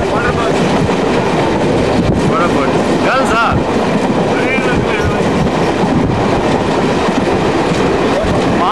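Express passenger train running at speed, heard from inside the coach: a steady loud rumble of wheels on the rails. A few short high-pitched chirping sounds rise and fall over it around the middle.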